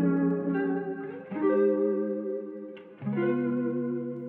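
Guitar chords heard only through the echo of a Waves H-Delay, with the dry guitars muted. The repeats are muffled with little top end, and a new chord comes in about every second and a half, each one fading before the next.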